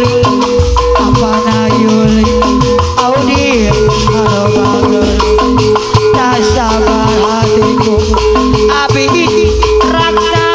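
Live Sundanese jaipong music played loud: fast hand drumming and mallet-struck gamelan metallophones under a long held melody line that glides in pitch now and then.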